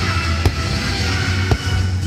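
Music of a fireworks show playing loudly, with two sharp firework bangs, about half a second in and again about a second and a half in.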